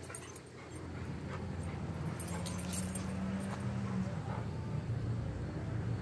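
Treeing Walker Coonhound whimpering, with one long, low whine held for about two seconds in the middle.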